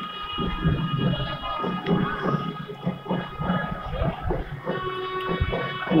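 Devotional music with long held notes, relayed over outdoor horn loudspeakers.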